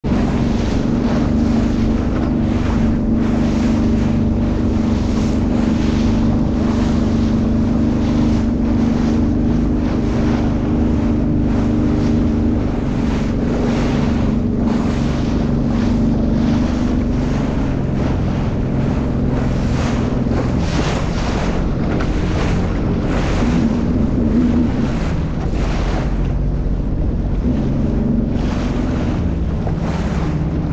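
Jet ski engine running steadily under way, with water repeatedly slapping and spraying against the hull over the chop and wind buffeting the microphone. The engine note drops away in the last few seconds.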